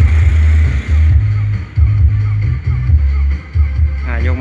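Loud music with heavy, pounding bass notes playing through a car audio system driven by a Platinum preamp, turned up high for a sound test; the treble becomes duller about a second in.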